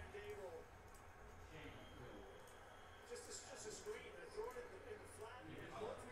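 Faint voice in the background, too quiet to make out words, over low room tone.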